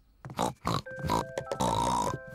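A few short snorting laughs from cartoon pig characters, then a short music cue of held notes begins about a second in as the scene changes.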